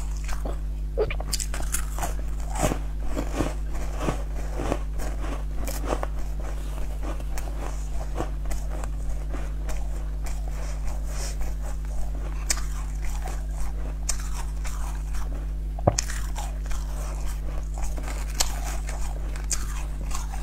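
A person biting and chewing crumbly purple pastries close to a lapel microphone, a steady run of sharp, wet crunches with a few louder bites, over a low steady hum.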